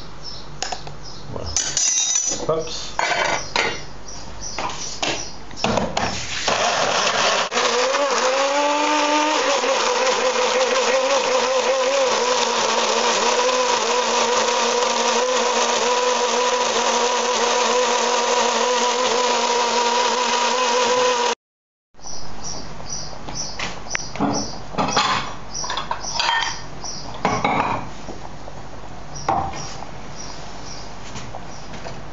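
Small electric blender running for about fifteen seconds, puréeing wild herbs with a spoonful of broth into a pesto base. Its hum rises in pitch a couple of seconds after starting, then holds steady until it cuts off suddenly. Before and after it, the glass jar and lid clink and knock as they are handled.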